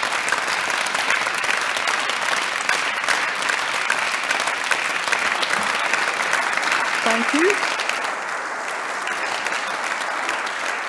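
Members of a parliament chamber applauding: sustained clapping from many hands, thinning a little near the end, with a short voice rising in pitch about seven seconds in.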